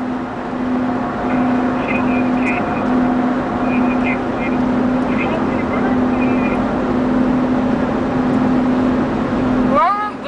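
Cabin noise of a car driving at highway speed: a steady rush of road and wind noise with a steady low drone underneath.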